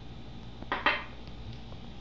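Small amber glass bottle set down on a glass tabletop: two quick clinks close together, about a second in.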